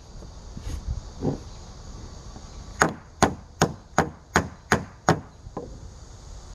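A Sennheiser handheld dynamic microphone knocked repeatedly against wooden deck boards. About three seconds in come about eight sharp knocks, a little over two a second, over a faint steady hiss.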